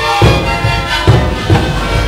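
A sikuris ensemble playing: many siku panpipes sounding in chorus over repeated strikes of large bombo bass drums.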